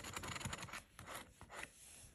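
Scratch-off lottery ticket being scratched: a fast run of faint scraping strokes across the coating, then a few slower separate strokes before it stops shortly before the end.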